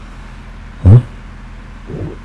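A single short questioning "hmm?", rising in pitch, about a second in, over a steady low background hum.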